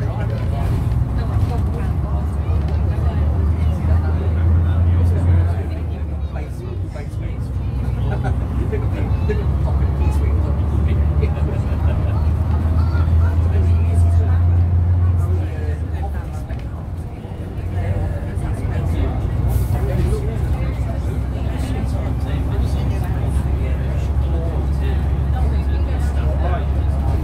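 Diesel engine of an Eastern Coach Works Bristol VR double-decker bus heard from inside the upper deck while driving, a low drone. It swells and then dips, once about six seconds in and again about sixteen seconds in, before running on steadily.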